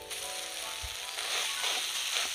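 Mashed boiled potato frying with onion and spices in a hot kadai, stirred with a spatula: a hissing sizzle that grows a little louder about a second in. Background music plays, with held notes at first.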